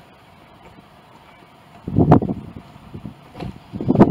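Wind buffeting the camera microphone in irregular low rumbling gusts, starting about two seconds in, with a brief click among them.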